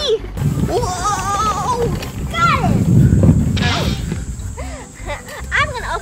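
Excited wordless voices: whoops, squeals and exclamations, with a low rumble in the middle that is the loudest part.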